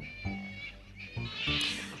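Soft background music with a short, high squealing call from a fruit bat (flying fox) about one and a half seconds in.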